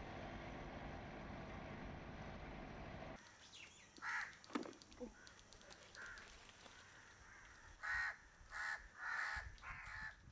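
Faint steady background noise for about three seconds that cuts off suddenly, followed by a bird giving short calls: a couple around the middle, then three or four in quick succession near the end.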